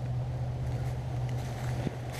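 Steady low rumble of wind noise on the microphone, with a small click near the end.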